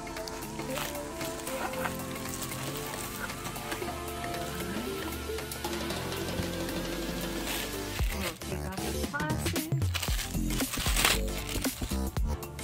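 Background music of held, steady notes. From about eight seconds in, clear plastic bags crinkle and rustle in irregular bursts as they are pulled off the doll's limbs, louder than the music.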